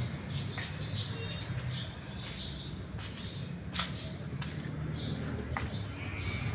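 Small birds chirping now and then over a steady low rumble, with a few scattered clicks and knocks.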